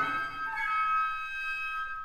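Woodwind octet (piccolo, flutes, clarinets, bass clarinet, baritone saxophone) in a quiet passage. The low instruments drop out and the upper woodwinds hold a soft high chord that fades, with a brief gap just before the full ensemble comes back in.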